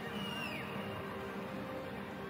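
Faint, steady ambience of a near-empty football stadium with a low hum, and a brief high falling call, a distant shout, about half a second in.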